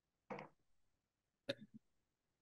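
Near silence broken by two faint, short sounds from a person: a brief breathy vocal sound about a third of a second in, and a sharp mouth click about a second and a half in.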